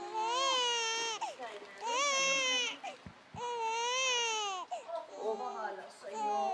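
A baby crying: three high wails of about a second each, rising and falling in pitch, with short breaths between, then quieter fussing near the end.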